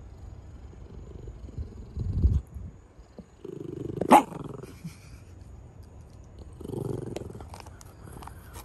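A small terrier growling low in short spells, about two seconds in, from three and a half to five seconds, and again near seven seconds, while it chews a dried chew. A single sharp click about four seconds in is the loudest sound.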